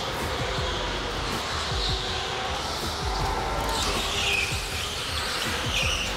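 Background music over the steady running noise of go-karts on an indoor track, with brief high tyre squeals about four seconds in and again near the end as the karts slide through corners.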